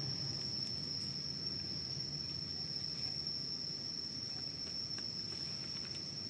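Insect trilling in one unbroken, steady high-pitched tone, over faint outdoor background noise.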